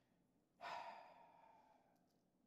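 A person sighing: one audible exhaled breath, slightly voiced, starting sharply about half a second in and trailing off over the next second or so.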